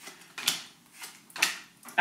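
Tarot cards being handled on a tabletop: two short, soft card flicks or slides, about half a second in and about a second and a half in, with a fainter one between.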